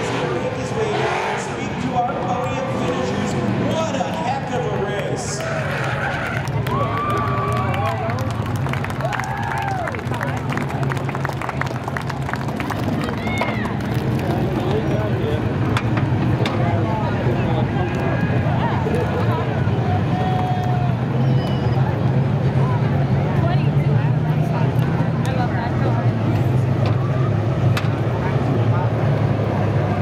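Stock cars' engines running at low speed and idling after the race, a steady low rumble that swells a little in the second half, with people's voices and calls over it.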